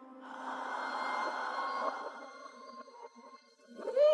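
Horror-film sound design: a breathy, rushing swell rises within the first second and dies away by about three seconds in. A short voiced cry, rising then falling in pitch, starts right at the end.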